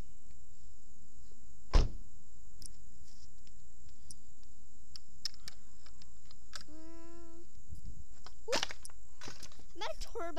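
A car door shutting with a single loud thump about two seconds in, over a steady low rumble. Later comes a short, steady pitched note lasting under a second.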